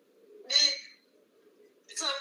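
A single short, high-pitched vocal call in a woman's voice about half a second in, over a faint steady hum.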